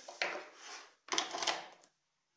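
A UK three-pin mains plug being handled and pushed into a power strip, with the cable rubbing over the desk: a short rustle, then a louder stretch of rubbing with a couple of sharp clicks about a second in as the plug goes home.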